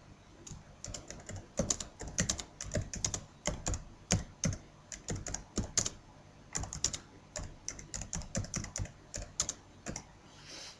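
Typing on a computer keyboard: an uneven run of key clicks, a few a second, with brief pauses between bursts.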